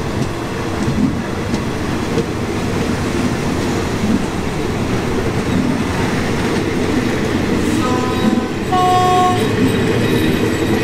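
Passenger coaches of a passing diesel-hauled train rolling slowly by on the next track, the wheels rumbling and clacking over the rail joints. Near the end, two short horn blasts sound, the second a little lower and louder.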